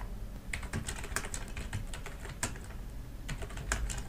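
Typing on a computer keyboard: a fast, uneven run of key clicks as a sentence is typed.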